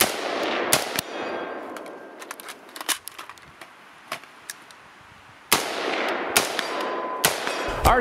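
An AR-15-style semi-automatic rifle firing single shots at an uneven pace, about five loud reports, each with a short echo, and fainter sharp clicks in between.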